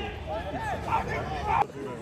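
Several spectators' voices talking and calling out in the stands over a low outdoor rumble, cut off abruptly near the end.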